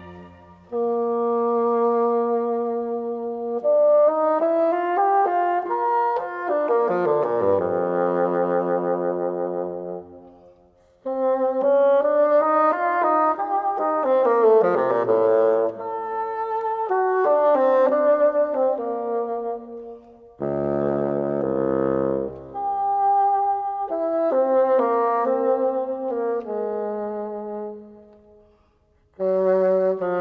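Solo bassoon playing slow, singing phrases, mostly on its own, with short pauses between them.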